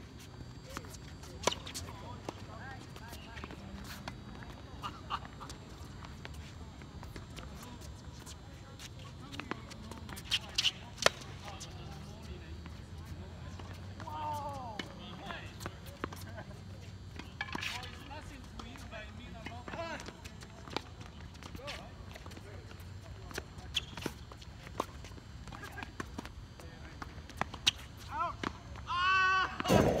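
Tennis balls struck by racquets and bouncing on a hard court: sharp pops at irregular intervals, with players' distant voices in between. A man's loud exclamation comes at the very end.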